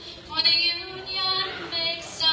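A woman singing unaccompanied into a microphone, in held notes of about half a second each.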